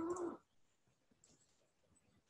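A drawn-out, whine-like voiced tone, rising slightly in pitch, that stops about half a second in. Then near silence with a few faint clicks.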